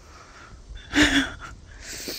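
A child's short, breathy puff with a brief voiced note about a second in, then a second hissing puff of breath near the end: blowing while trying to blow a bubble-gum bubble.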